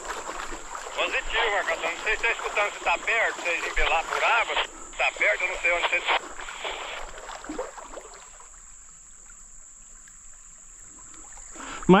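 A tinny, thin-sounding voice over a handheld two-way radio, talking for about six seconds, then falling away to the quiet slosh of water around legs wading in the river.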